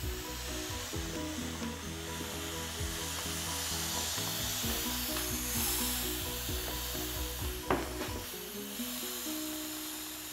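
Air hissing steadily out of an inflatable vinyl beach ball's valve as the ball is squeezed, with the plastic rubbing. Background music with a bass line plays throughout, and there is one sharp click about three-quarters of the way through.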